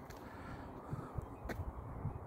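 Microphone noise on a handheld phone outdoors: a low, uneven rumble with a single sharp click about one and a half seconds in.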